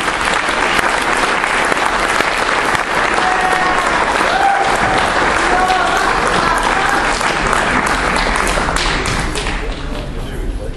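Audience applauding, a dense steady patter of many hands clapping that fades near the end, with voices mixed in.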